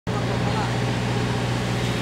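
Steady low drone of a river ferry's engine running, with an even rush of wind and water over it.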